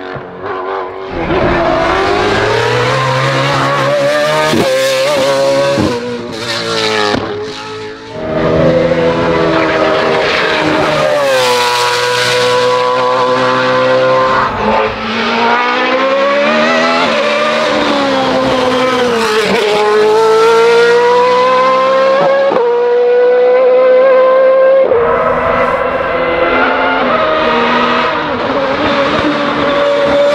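Race car engines at full throttle on hill-climb runs. First a Mercedes SLK 340 Judd hill-climb prototype, then a Lola B03/51 Formula 3000 single-seater running at high revs. The pitch climbs and drops back sharply again and again as each gear is changed.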